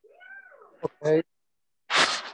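A cat meowing once, a single call under a second long that rises and then falls in pitch, followed by a short click.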